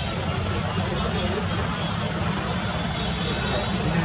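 Steady low outdoor rumble with faint voices of people in the background.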